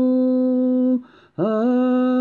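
Unaccompanied solo voice singing a slow melody in long held notes with small turns in pitch at the note changes, breaking off for a breath about a second in.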